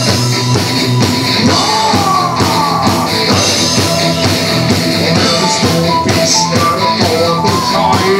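Live rock band playing loudly with a steady drum beat, guitars and bass, while a male singer sings into a handheld microphone.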